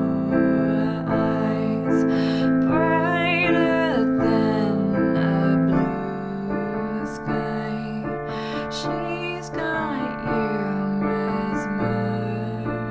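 Piano playing a repeating chord accompaniment in F major (F, A minor, D minor, B-flat major seventh, B-flat minor), with a voice singing the melody over it.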